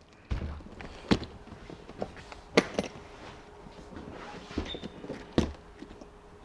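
A leather-covered hardshell guitar case set down on a wooden table with a dull thump, followed by several sharp clicks and knocks as it is handled and its metal latches undone.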